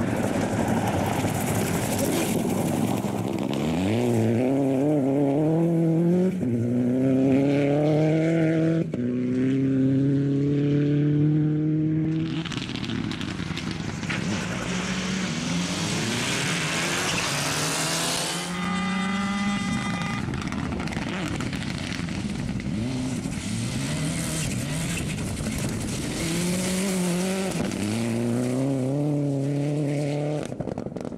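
Rally car engine revving hard as the car accelerates along a gravel stage, its pitch climbing in several steps through the gear changes. In the middle there is a long rush of tyre and gravel noise as a car passes. The engine revs rise again near the end.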